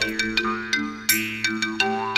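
Background music: a quick run of bright, ringing notes, about three to four a second, over a held low drone, with a louder accent about a second in.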